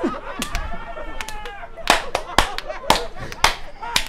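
People laughing hard, broken by a run of sharp hand smacks, about nine in all and loudest from about two to three and a half seconds in.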